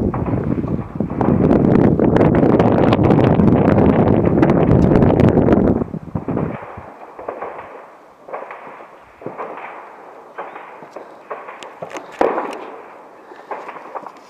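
Gunfire in the distance: a loud, dense crackle of many shots for about five seconds, then scattered single shots and short bursts.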